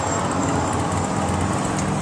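A steady low engine rumble that holds even throughout, with a faint hiss above it.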